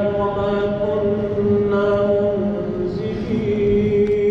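A reciter's voice chanting an Islamic prayer recitation (dua) in long held notes, the pitch shifting slightly now and then.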